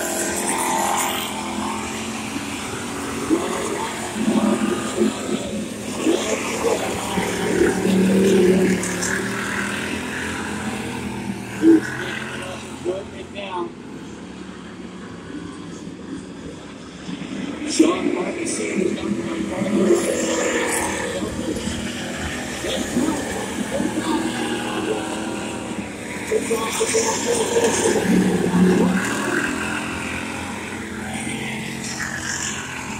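Hobby stock race cars' engines running laps around a dirt oval, heard from the grandstand, with a public-address announcer's voice over them and a couple of sharp knocks near the middle.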